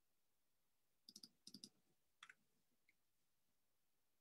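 Faint computer clicks, a few quick ones in small clusters about a second in, then two single clicks, over near silence.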